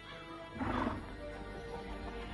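Background music with a horse neighing once, briefly and loudly, about half a second in.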